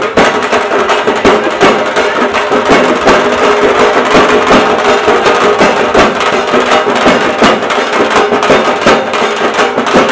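Dhak drums beaten in a fast, driving rhythm, with the noise of a dense crowd under them.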